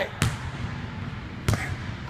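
Two gloved punches landing on a Title heavy punching bag, two sharp thuds about a second and a quarter apart.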